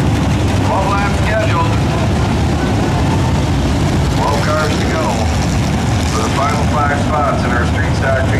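A field of street stock race cars running together at low speed in formation, a steady, loud engine noise from many cars at once.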